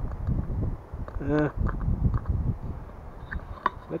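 Wind buffeting the camera's microphone in uneven gusts, a low rumble, with a few faint clicks.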